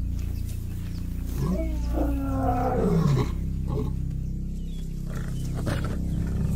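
Lions calling: several overlapping, pitched calls that glide up and fall, about one and a half to three seconds in, with a few shorter calls near the end.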